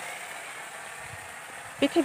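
Quiet, steady outdoor background hiss with no distinct event; a woman starts speaking again near the end.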